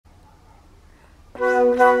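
A flute ensemble comes in suddenly about a second and a half in, after a quiet start, playing a held chord of several notes together.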